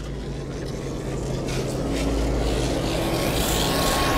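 Intro sound design for a logo animation: a low drone of steady held tones under a rush of noise that slowly builds in loudness.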